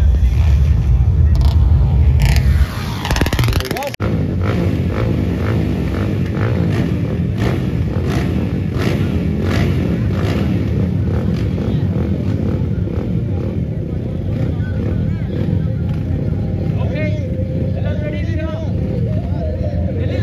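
Dirt-bike engines running: a bike riding toward the microphone for the first few seconds, then, after abrupt changes about three and four seconds in, a group of dirt bikes running together. A man's voice over a microphone comes in near the end.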